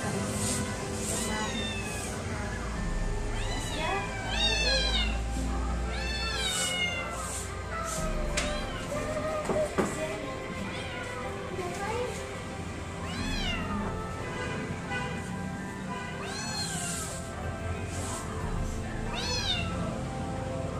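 A kitten meowing again and again, about a dozen high calls that rise and fall in pitch, spaced a second or more apart.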